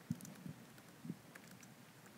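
Faint keystrokes on a computer keyboard: a handful of irregular taps, the first one the loudest.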